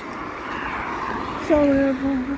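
A passing-vehicle rumble swells and fades, then about one and a half seconds in a man's voice starts with a drawn-out, slightly falling sound. The voice is the loudest part.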